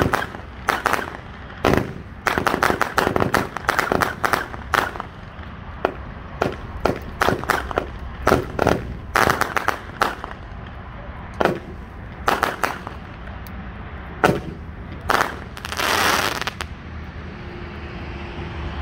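Winda "Fun Fuel" 50-shot, 200-gram consumer fireworks cake firing: a rapid, irregular run of launch thumps and aerial bursts with crackle, coming in quick clusters. One longer, noisier burst comes near the end, then the shots stop a little before the end.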